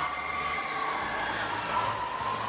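Running Superstar fairground thrill ride in a large hall: a steady din of fairground music and ride rumble, with a rider's long, held scream through the first half.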